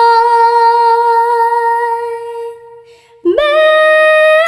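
A woman singing a Nghệ Tĩnh folk song, holding one long, steady note without words that fades and breaks off a little before three seconds in. After a short breath she slides up into a new held note.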